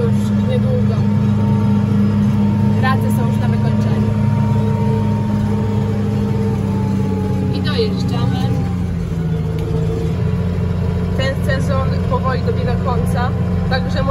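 Tractor engine running steadily, heard from inside the cab, with a thin high whine that slowly falls in pitch over several seconds; the engine note dips slightly about nine seconds in.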